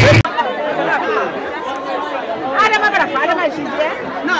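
Overlapping chatter of several people talking at once. A louder sound with a deep bass cuts off abruptly about a quarter second in, where the picture cuts.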